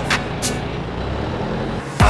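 A vehicle engine running close by, a steady low rumble. A couple of beats of background music sound in the first half-second.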